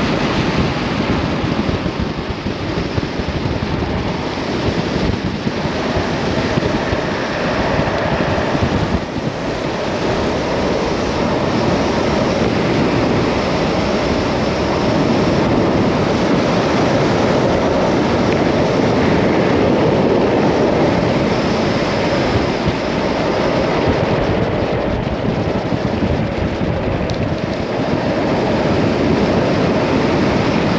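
Steady rush of wind buffeting a helmet-mounted camera's microphone during a high-speed downhill longboard run, mixed with the continuous roar of longboard wheels rolling on asphalt.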